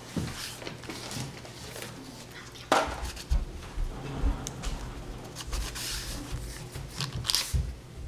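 Oil pastel rubbing on paper in a series of short, dry, scratchy strokes over a low steady hum. There is a sudden knock just under three seconds in, and irregular low bumps of handling after it.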